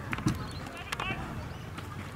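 Voices calling out across an open football ground, with a few sharp knocks and one louder thud early on.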